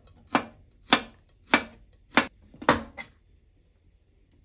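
Kitchen knife slicing garlic cloves on a bamboo cutting board: about six sharp knocks of the blade on the board, roughly half a second apart.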